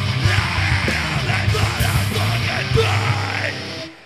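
A metal band playing live: distorted electric guitars, bass and drums with shouted vocals over them. The music cuts off near the end.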